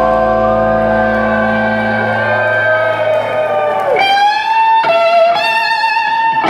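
Live electric guitar played on its own. A held chord rings with bass notes under it for about two seconds, then fades. About four seconds in, the guitar plays single sustained lead notes with a rising bend and vibrato.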